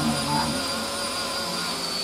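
A steady low hum with a faint, thin high-pitched whine, and a brief trailing voice at the very start.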